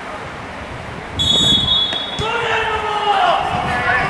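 A referee's whistle gives one steady, high blast lasting about a second, signalling the kick-off. Right after it, players start shouting.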